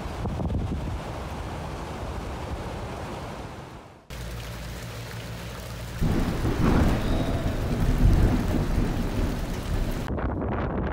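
Steady rain, then about six seconds in a sudden loud clap of thunder from a close lightning strike, rolling on as a deep rumble.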